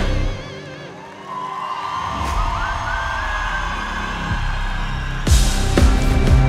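A live band's song breaks down: the full band with drums drops out, leaving a slowly rising, siren-like tone, and the band crashes back in about five seconds later.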